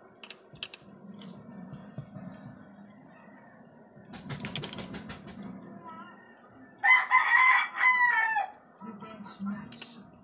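A rooster crowing once, about seven seconds in: a loud call of about a second and a half in a few segments, the last falling in pitch. Shortly before it there is a quick run of light clicks.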